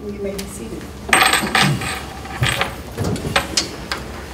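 Several people sitting back down at tables: chairs shifting and objects knocking on tabletops in an irregular run of clatters and clicks, the loudest about a second in, with faint murmuring voices.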